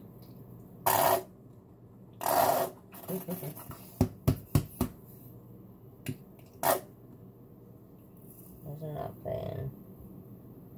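Upside-down plastic squeeze bottle of red sauce being squeezed: a few short sputtering squirts as sauce and air spurt from the nozzle, with a quick run of sharp plastic clicks about four seconds in.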